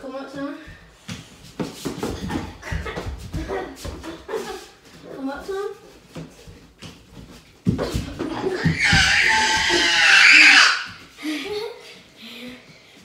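Pillows thudding against bodies in a pillow fight, with voices between the blows and one long, loud cry near the end.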